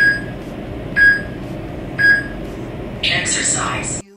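Countdown timer sound effect: three short electronic beeps one second apart, then a longer, higher-pitched start signal about three seconds in, marking the end of a rest and the start of the next exercise, over a steady hiss.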